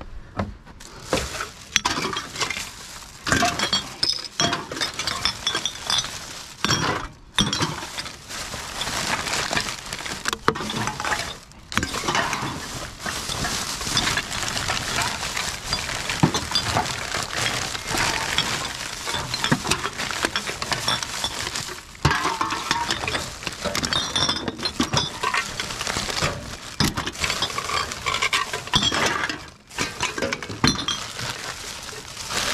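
Empty aluminium drink cans and glass bottles clinking and clattering against each other as a plastic garbage bag of them is handled and shifted in a car boot, with the bag rustling.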